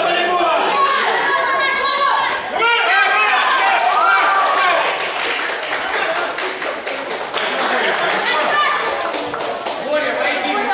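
Many voices chattering and calling out at once in a large, echoing gym hall, with scattered thuds and taps from sparring on the mats, mostly in the second half.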